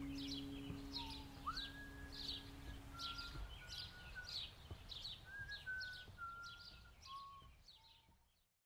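Faint birdsong: short high chirps repeating about twice a second, with a few short whistled notes between them. A low held tone stops about three seconds in, and the birdsong fades out near the end.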